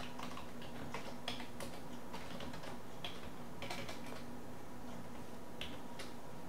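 Computer keyboard being typed on in irregular bursts of key clicks, over a steady low hum.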